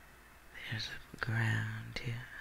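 A man's low, wordless murmur under his breath, held on one steady pitch for the latter part, with a single sharp click a little past one second in.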